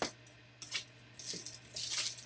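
Rustling and light clicking of trading cards and their plastic holders being handled close to the microphone: a sharp click at the start, then irregular scraping rustles, the loudest near the end.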